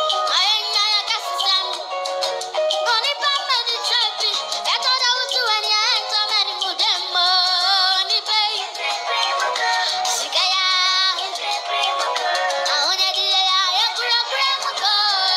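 A young boy singing into a stage microphone, a continuous sung melody with wavering held notes.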